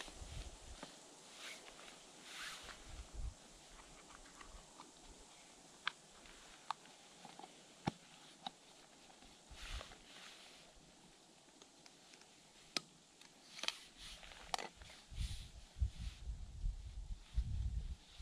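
Small camping gas-stove cook set being unpacked by hand: scattered light clicks and small knocks as the pot, canister, cup and spork are lifted out and set down, with a run of low rumbling bumps near the end.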